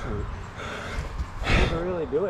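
A man's voice and heavy breathing, with a sharp breathy gasp about one and a half seconds in, over a steady low rumble.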